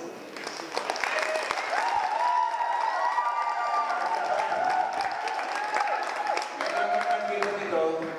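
Audience applause, a dense patter of many hands clapping for about seven seconds, with a single held, wavering tone over the middle of it.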